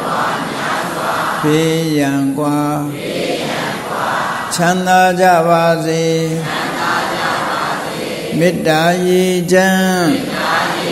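A monk's voice chanting Pali verses in a slow, level intonation: three long held phrases. Between the phrases a blurred chorus of many voices answers, the congregation repeating after him.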